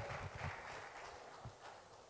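Faint, scattered hand clapping from an audience, dying away over the first second and a half.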